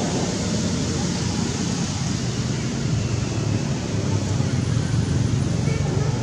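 Steady outdoor background noise with a low rumble and indistinct distant voices, with no distinct event standing out.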